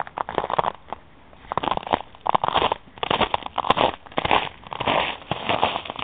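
Footsteps crunching through ice-crusted snow, a steady run of irregular crackling crunches.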